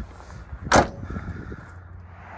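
The rear liftgate of a 1994 Ford Aerostar van slamming shut: one sharp bang about three quarters of a second in, with a few faint knocks after it.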